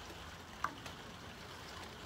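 Steady hiss of rain falling, with one short click about two-thirds of a second in.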